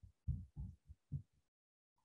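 Four faint, soft low thumps in the first second or so, then the audio drops to dead silence.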